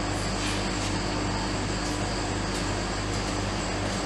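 Soft-serve ice cream machine running in cooling mode, with a steady mechanical hum from its refrigeration compressor and fan. A few faint clicks sit over it.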